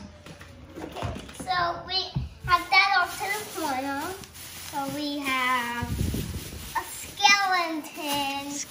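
A young child's high voice, vocalising and chattering without clear words, with plastic shopping bags rustling as he digs into them.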